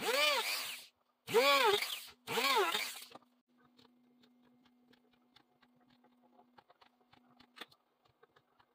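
Handheld rotary tool with a small drill bit run in three short bursts, each spinning up and winding back down, drilling tuner-screw pilot holes into a wooden guitar headstock. Faint clicks and taps of handling follow, with one sharper click near the end.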